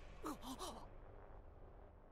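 Short, faint gasping cries: a few quick falling breathy sounds of shock about half a second in.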